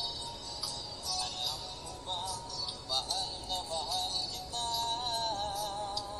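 A Tagalog love song: a sung melody with wavering held notes and small glides over backing music with a bright, repeated high shimmer.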